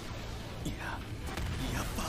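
Anime episode soundtrack playing back: brief, quiet character dialogue over low background music.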